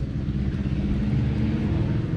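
Motorcycle engine running nearby, a steady low engine note that holds at a constant pitch.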